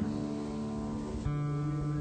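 Guitar chord ringing out, with a new chord struck about a second in and held.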